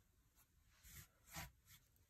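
Near silence, broken by two faint, brief rustles of hands smoothing cotton fabric over batting on a cutting mat, about a second in and again about half a second later.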